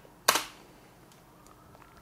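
A single sharp computer keyboard key press, about a quarter second in, the Enter key sending a typed web address, followed by quiet room tone.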